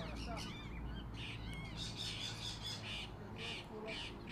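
Parrots squawking and chattering, with a run of harsh, repeated calls from about a second in.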